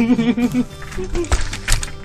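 Muffled laughing through a mouth stuffed with marshmallows, then a few sharp knocks from someone getting up out of a chair about a second and a half in.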